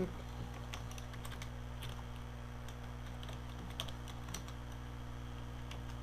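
Computer keyboard keys clicking in an irregular run of keystrokes as a line of text is typed, over a steady low electrical hum.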